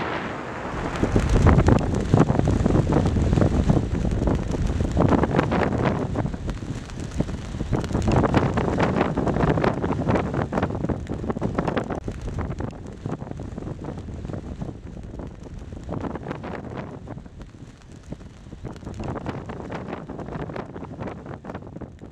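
Strong wind buffeting the microphone in gusts, with a cloth flag flapping hard in it. It is loudest in the first half and eases off in the second.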